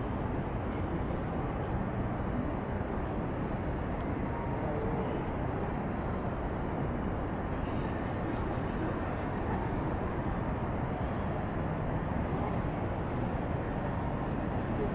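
Steady outdoor city ambience: a constant low hum of the surrounding city. A faint, short high chirp recurs about every three seconds.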